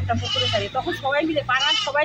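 A woman speaking: only speech.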